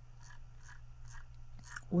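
Computer mouse scroll wheel turned notch by notch: a series of light, quick ticks, about three to four a second.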